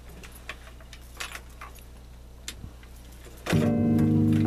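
Steady amplifier hum with scattered small clicks and taps as the electric guitar is handled. About three and a half seconds in, a loud chord is struck on the electric guitar through the amplifier and rings on.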